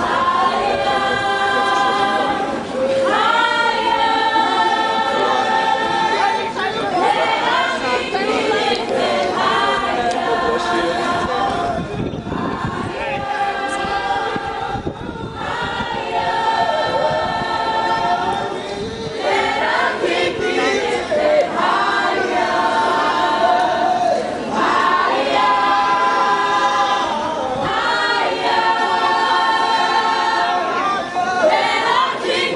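A gospel flash-mob choir, many voices singing together in long phrases with brief breaks between them.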